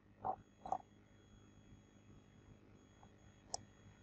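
Near silence broken by a few faint short clicks: two soft ones in the first second and a sharper one about three and a half seconds in.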